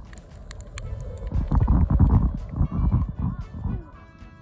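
Muffled underwater noise from a submerged camera: a stretch of rough, irregular low rumbling through the middle, under light background music.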